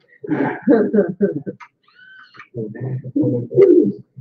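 Men laughing in a room, in choppy voiced spells with a short pause in the middle, from an old video recording.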